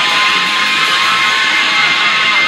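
Rock music with electric guitar, a long held note sustaining over the band.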